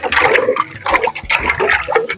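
Water sloshing and splashing in an aluminium pot as pieces of peeled cassava are washed and rubbed by hand, in irregular splashes.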